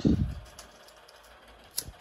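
A low thump of handling at the start, then quiet, then a single sharp click near the end as a disposable lighter is struck alight.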